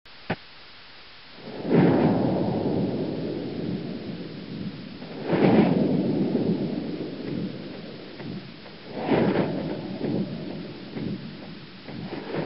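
Thunderstorm sound effect: three claps of thunder three to four seconds apart, each a sharp crack that rolls away into a long rumble, over steady rain hiss. A short click comes right at the start.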